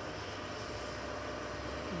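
Distant excavator's diesel engine running steadily as it digs: a low, even rumble with a faint steady whine.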